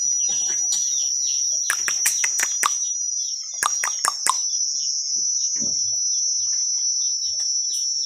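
Crickets chirring in a steady high-pitched drone, with two short runs of quick sharp clicks about two and four seconds in.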